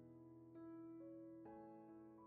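Quiet, slow piano background music: single notes struck about every half second over a held low note.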